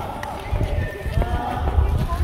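Indistinct voices, with no clear words, over an uneven low rumble that grows stronger about halfway through.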